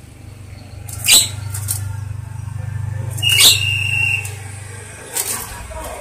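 Caged Javan myna giving two loud, harsh calls about two seconds apart, each sweeping down in pitch, the second ending in a short held whistle, over a low steady hum.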